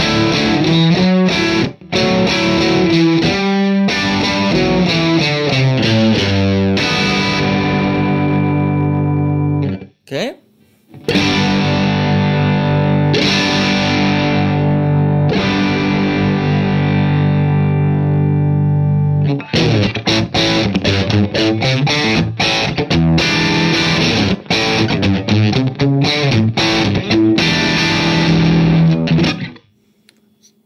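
Macmull T-Classic electric guitar played through a Vox MVX150H NuTube amp head on its crunch channel: distorted chords and riffs with an overdriven edge. After a brief break about ten seconds in, a chord rings out for several seconds, then choppy rhythm playing follows until just before the end.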